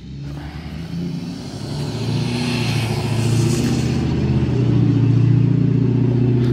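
Pickup truck driving past on the road, its engine growing steadily louder as it nears, with a high whine that sounds like a vacuum cleaner.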